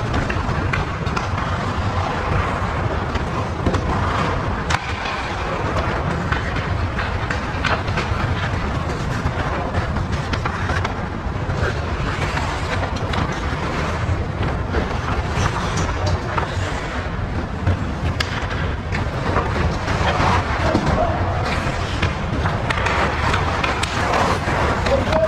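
Ice hockey play on an indoor rink: skate blades scraping and carving on the ice, with occasional sharp clicks of sticks on the puck, over a steady low hum of the arena.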